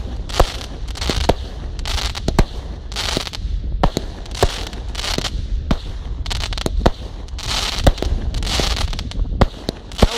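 Aerial fireworks going off in a display: a run of sharp bangs at irregular intervals, one or two a second, with stretches of crackling from the bursting effects between them.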